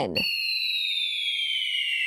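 A high, whistle-like electronic sound effect that starts just as the spoken word ends and glides slowly and steadily down in pitch, two tones sounding together over a thin hiss.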